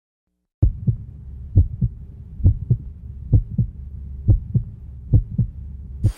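Heartbeat sound effect over the opening logo: a double thump, lub-dub, repeating six times at a little over one beat a second over a low steady drone. It starts about half a second in.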